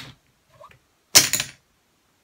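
Heavier, higher-quality poker chips dropped from the hand onto a stack of chips, giving a short clatter of several quick clicks a little after a second in.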